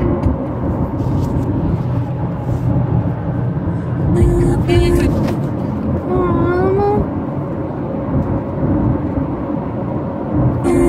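Steady road and engine noise inside a moving car's cabin. Two short pitched snatches of sound cut in about four seconds and about six seconds in.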